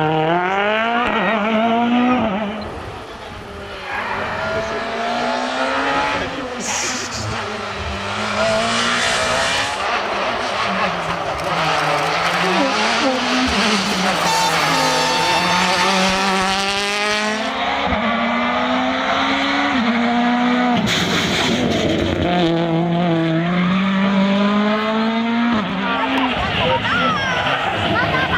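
Turbocharged four-cylinder World Rally Car engines (Ford Fiesta RS WRC and Citroën DS3 WRC) accelerating hard past, one car after another. Engine pitch repeatedly climbs and then drops back as the cars change gear.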